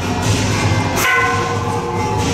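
A metal bell struck once about a second in, its several clear tones ringing for about half a second over steady loud background music.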